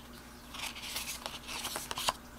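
Tarot cards being handled: soft rustling and sliding of card stock as the laid-out cards are straightened and the next card is drawn from the top of the deck, with a few light clicks.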